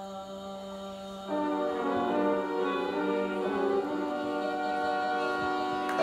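Closing chord of a live band ending a song: a held low note, then about a second in the band comes in louder on a long sustained final chord.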